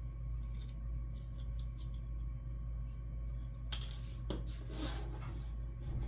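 Small plastic 3D puzzle pieces clicking and rubbing as fingers handle them and press them together, with a couple of louder scraping rustles a little past the middle, over a steady low hum.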